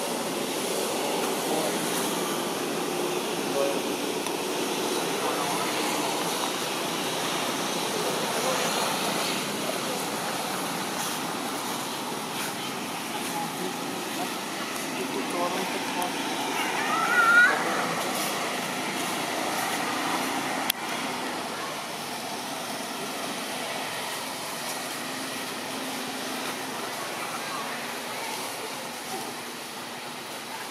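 Outdoor ambience of steady background noise with indistinct voices, and a brief high wavering cry a little past halfway.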